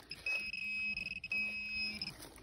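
Metal detecting pinpointer probed into a dug hole, sounding two steady high-pitched alert tones, each under a second long with a short break between them, signalling metal in the hole.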